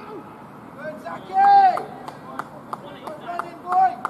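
Cricketers' shouted calls across the field while the batsmen run between the wickets. A long held call comes about a second and a half in and a shorter one near the end, with a string of sharp clicks, about three a second, in between.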